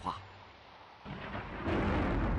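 Thunder rumbling. It comes in about a second in and swells louder just after halfway.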